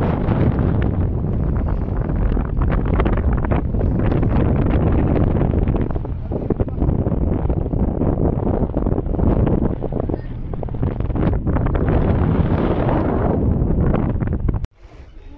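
Strong wind buffeting the microphone: a loud, continuous rumble that rises and falls with the gusts.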